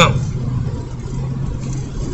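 Steady low hum of a vehicle running, heard from inside the van's cabin.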